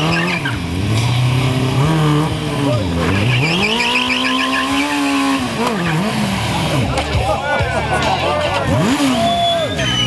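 A sport motorcycle's engine is revved hard again and again while its rear tyre spins on cobblestones in a burnout. The revs climb and drop every second or two and are held high for about two seconds in the middle, where the tyre squeals.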